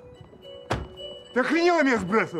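A car door slams shut once, a single sharp thunk about three-quarters of a second in, over background music. A voice follows in the last half second.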